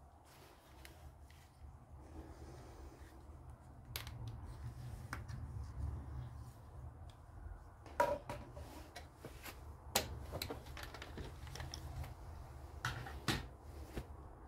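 Scattered sharp clicks and knocks of hand work on a timber bench frame over a low steady hum. A quick pair of clicks near the end comes as a quick-release bar clamp is loosened and taken off the batten.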